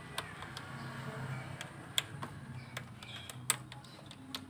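Small plastic clicks and taps as a fuse puller grips and works the 15-amp EFI blade fuse in a car's engine-bay fuse box, pulling it to cut power to the ECU for a reset. The sharpest clicks come about two seconds in and again about three and a half seconds in, over a faint steady low hum.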